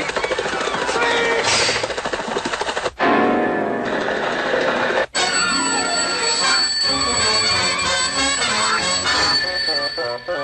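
Busy orchestral cartoon score with a man's voice calling out over it, cutting out twice for an instant, about three and five seconds in.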